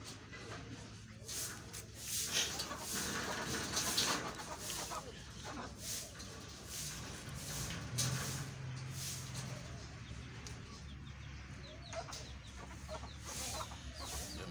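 Chickens clucking, with short rustles and knocks from rabbits moving on a wire cage floor.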